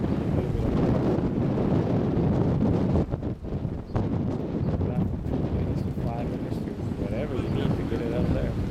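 Wind buffeting the camera microphone: a steady, gusty low rumble that eases briefly about three seconds in.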